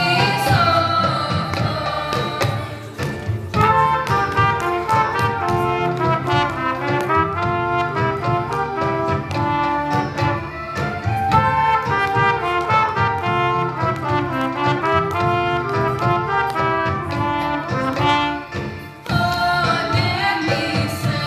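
A children's ensemble of recorders and trumpets plays a melody in unison, with a short break about three seconds in and another near the end.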